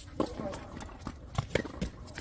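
Tennis rally on a hard court: a few sharp knocks of the ball off racket and court, with footsteps.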